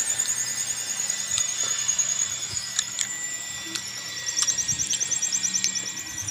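Insects chirping in a high, fast pulsing drone that keeps on without a break, with a faint steady whine under it and a few light clicks.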